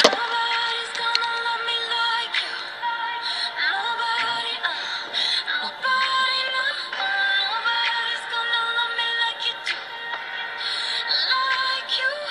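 Background pop music with singing, playing steadily.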